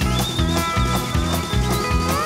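Live country band instrumental: a fiddle plays a wavering lead melody over a brisk, even bass and drum beat, with a steel guitar in the band.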